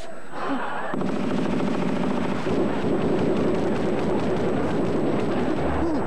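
A gasp, then from about a second in a long, continuous volley of rapid machine-gun fire, shot after shot with no break.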